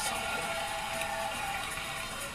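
Studio audience applauding, a steady wash of clapping, with music held underneath.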